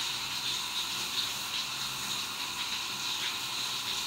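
Running water hissing steadily.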